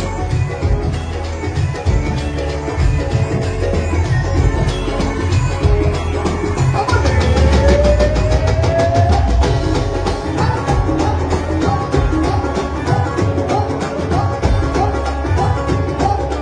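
Live Punjabi band music, loud, led by a dhol and drum kit playing a fast, steady beat, with a melody line that slides upward about halfway through.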